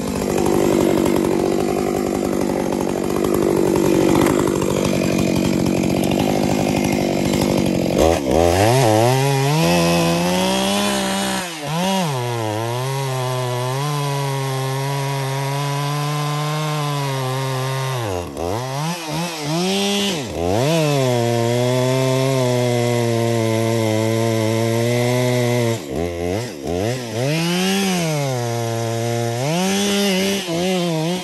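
A large Stihl Magnum professional chainsaw running at high revs while cutting up a big felled trunk. For the first few seconds it is a dense, rough roar; after that the engine note is clearer and dips sharply and recovers several times as the saw is loaded in the cut and eased off.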